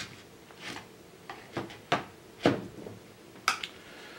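Screwdrivers being set into the holder insert of their box: about half a dozen sharp, irregular clicks and knocks of the handles and shafts against the insert and box.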